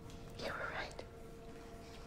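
A short breathy whisper lasting about half a second, followed by a small click, over a faint steady hum.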